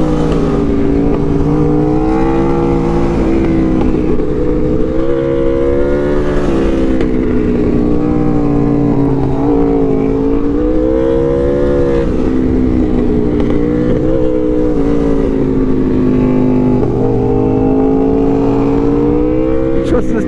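Aprilia RSV4 V4 engine with a Yoshimura exhaust, heard onboard, its pitch rising and falling again and again as the throttle is opened out of each curve and rolled off into the next. Steady wind rush on the microphone runs underneath.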